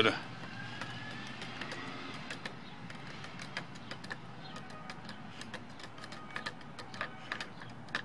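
Used motor oil crackling and ticking faintly around a hot O1 drill-rod tool steel tip as it cools after quenching, scattered sharp clicks over a steady low hiss, the clicks coming more often in the last few seconds.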